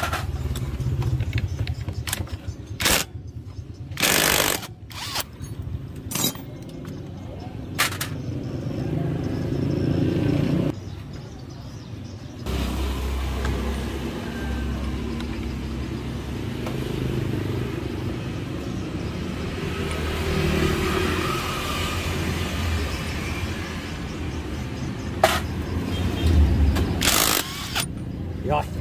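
Short bursts of an air impact wrench on a motorcycle clutch nut. Four bursts come in the first eight seconds and two more near the end, with a steady low hum through the middle.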